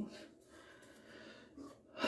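A very quiet pause: faint bathroom room tone, with a short soft sound, such as a breath, about one and a half seconds in.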